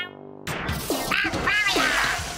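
Cartoon sound effects: a rush of splashing water with three short quack-like squawks from a cartoon sea creature, starting about half a second in.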